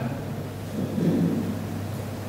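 A pause between spoken phrases: a steady low hum and room noise, with a faint low rumble about a second in.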